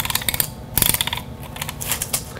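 Handheld adhesive tape runner being rolled along a paper strip, its ratchet clicking rapidly in three short bursts: at the start, just under a second in, and near the end.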